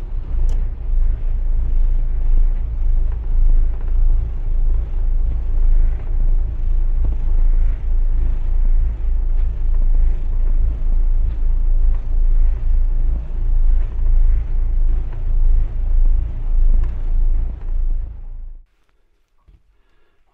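Twin inboard engines of a 13 m motor-sailing catamaran running at low speed, a deep rumble that swells and fades about once a second. It cuts off suddenly a second and a half before the end.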